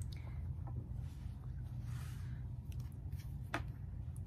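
Faint rustling of quilting cotton being handled and folded, with one sharp light click about three and a half seconds in, over a steady low hum.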